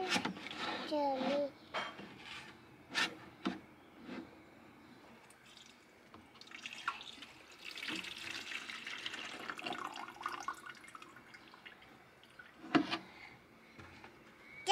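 Water pouring from a large plastic watering can into a small one for several seconds from about halfway through, with knocks of the plastic cans being handled before and after.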